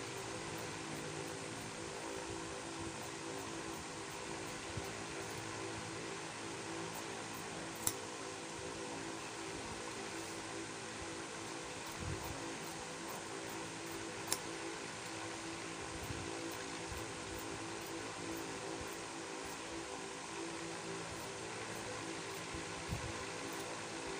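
Steady mechanical hum like a room fan running, with two brief sharp clicks about six seconds apart.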